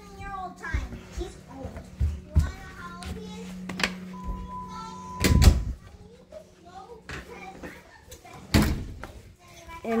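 Indistinct talking over a steady low hum, with two loud thumps, one about halfway through and one near the end.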